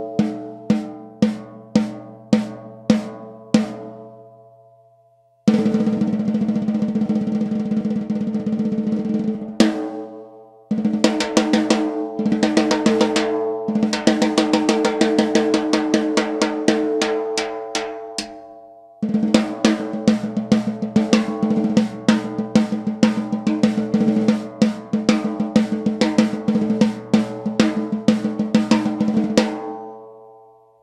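BL Drum Works custom snare drum played with sticks with the snares off, so each hit rings with clear pitched tones instead of a snare buzz; bottom head tuned tight, top head between medium and tight, with a touch of added reverb. It starts with single strokes about two a second, then after a short pause moves into rolls and fast sticking patterns.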